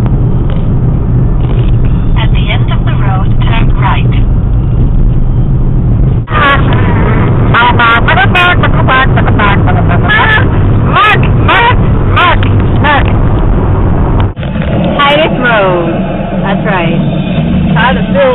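Loud, steady rumble inside a moving car from the road and engine, with raised voices calling out over it. The sound breaks off abruptly twice, about six and fourteen seconds in.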